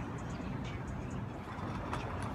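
Steady low rumble of outdoor urban background noise, with a few faint high ticks.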